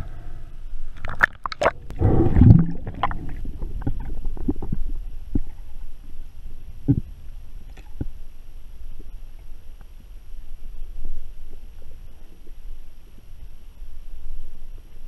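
Splashing and gurgling as a spearfisher dives from the surface and the microphone goes under the water, loudest about two seconds in. Then muffled underwater ambience with a low rumble and occasional faint clicks.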